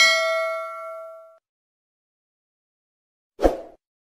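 Bell-like ding sound effect of a subscribe-button animation: one bright struck chime that rings out and fades over about a second and a half. A short dull pop follows about three and a half seconds in.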